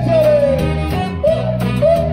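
Live band playing: bass, drums, guitar and hand percussion in a steady beat, with a high sung or horn line that swoops up and slides down at the start and bends again near the end.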